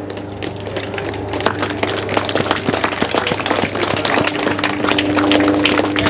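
A small crowd applauding with scattered, irregular claps that grow a little louder, over a steady low hum.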